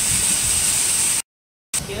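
Evaporative condenser of a block ice plant running: a steady, loud hiss of its fans and water spray, with a strong high hiss on top. It breaks off suddenly a little over a second in, and after half a second of silence a quieter machine hum takes over.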